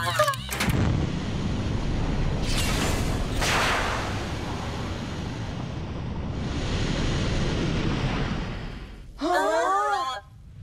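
Animated sound effect of a spacecraft's rocket thrusters firing: a long rumbling rush that swells twice as the craft pulls away. Voices break in near the end.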